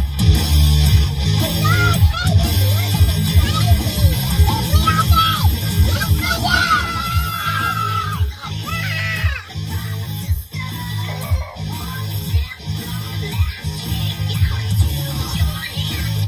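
Loud rock music with a heavy, driving beat and vocals, blasting from the car's stereo.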